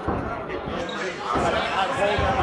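Indistinct voices of several people talking in a large, echoing room, with a dull low thud or two underneath.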